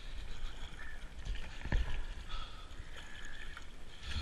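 Kayak paddling on calm water: paddle blades dipping and splashing, with water running and dripping off them, and a stronger stroke about halfway through. A low rumble sits under it on the helmet-camera microphone.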